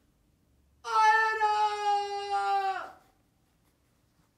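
A high-pitched, drawn-out vocal cry from a puppeteer voicing a puppet. It starts about a second in, is held for about two seconds while its pitch slides slightly down, and then trails off.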